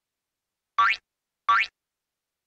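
Two short cartoon sound effects about two-thirds of a second apart, each a quick glide rising in pitch.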